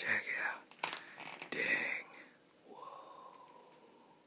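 A person whispering and breathing close to the microphone in a few short breathy bursts, with a faint steady tone in the last second or so.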